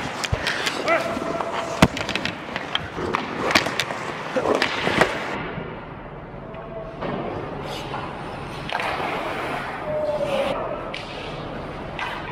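Ice hockey play at the net: skate blades scraping the ice, with sharp clacks and knocks of sticks and puck, the loudest about two seconds in. After about five seconds the play is quieter, with fewer knocks, and short calls from players are heard now and then.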